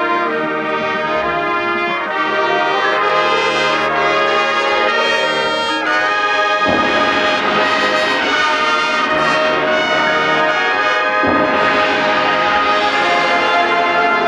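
Marching band brass section playing sustained chords, with strong accented hits about seven and eleven seconds in that swell the full band.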